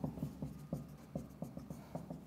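Marker writing on a whiteboard: an irregular run of short taps and strokes as terms are written out.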